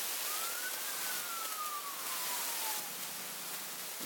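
Steady background hiss with no speech. Through it runs a faint thin tone that rises briefly and then glides slowly down in pitch for about two seconds before fading out.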